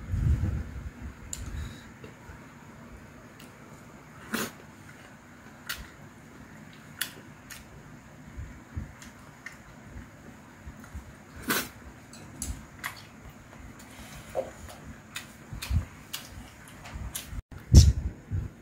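Chopsticks giving scattered light clicks against a stainless steel bowl and dishes, one every second or two, with soft eating sounds between.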